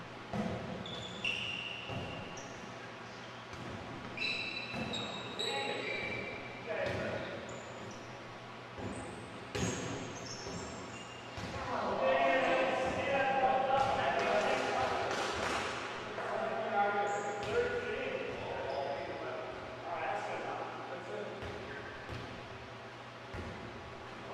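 Volleyball being played on a hardwood gym floor: the ball struck or hitting the floor with sharp knocks every few seconds, and sneakers giving short high squeaks, all echoing in a large hall.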